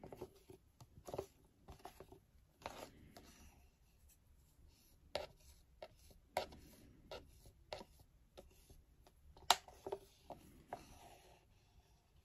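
Thin plastic cups clicking and rubbing against each other as two-part resin is poured from one cup into the other: faint scattered ticks with some light scraping, and a sharper click about nine and a half seconds in.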